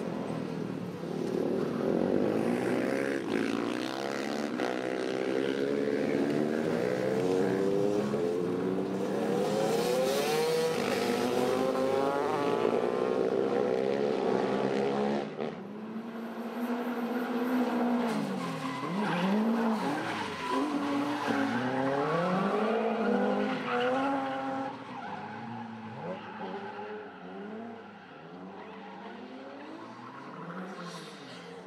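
Motorcycle engines revving up and down through the first half. After a cut about halfway through, a rally car's engine revs and drops in deep swoops as its tyres squeal in a drift, growing quieter near the end.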